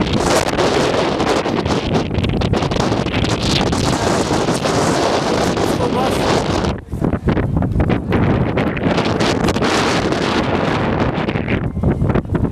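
Strong wind blowing across the camera microphone, loud and gusting unevenly, with a brief lull about seven seconds in.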